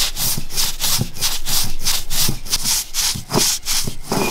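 Stone roller rubbed back and forth over a flat stone grinding slab, grinding roasted grated coconut and spices into a coarse paste, in quick, even strokes of stone scraping on stone.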